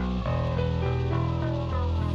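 Instrumental passage of a song: guitar and bass guitar playing held notes, changing chord just after the start.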